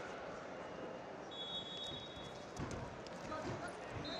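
Background din of a large arena hall at a wrestling tournament, with a few dull thuds of wrestlers' feet and bodies on the mat in the second half. A high steady tone sounds briefly a little over a second in.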